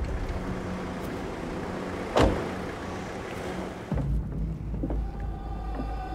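A taxi running at idle and its car door slamming shut about two seconds in. At about four seconds the sound changes to a deep, low rumble.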